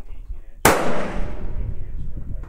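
A single shot from a Remington 700 SPS Varmint rifle in .308 Winchester, a sharp crack about two-thirds of a second in that rings out and fades over about a second.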